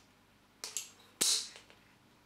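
Caulking gun working as silicone sealant is squeezed out in blobs: two short sharp clicks, the second louder and brighter.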